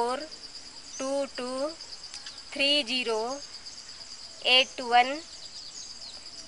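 Crickets chirring in a steady high trill, heard under a woman's voice that speaks in four short, separate bursts.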